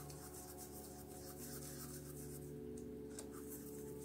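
Paintbrush scrubbing acrylic paint around on a palette, a faint soft scratching, over quiet background music of held notes.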